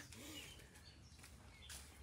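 Near silence: faint room tone with a few faint, short bird chirps.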